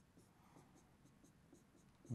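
Near silence with faint, short strokes of a stylus writing by hand on a tablet.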